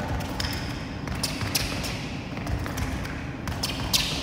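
Fast fencing footwork: shoes thudding and tapping on the piste floor in quick shuffling steps, uneven strikes a couple of times a second.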